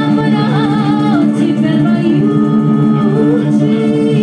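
Live Balkan band music: a woman sings with violin, clarinet and accordion playing along. A long held note with vibrato ends about a second in, and the melody carries on lower.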